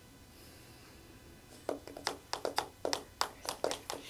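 Near silence, then from about halfway in a quick run of short scratchy taps and strokes: a dry-erase marker writing on a handheld whiteboard.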